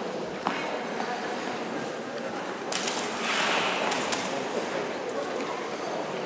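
Indistinct voices echoing in a large ice rink, with skate blades hissing across the ice about three seconds in.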